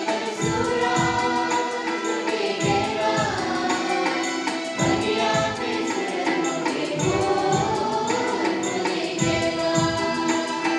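Sadri-language church entrance hymn sung by a group of voices, accompanied by electronic keyboard, guitar and stick-played percussion that keeps a steady low drum beat.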